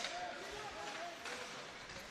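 Faint ice-rink arena ambience: distant voices over a steady background noise.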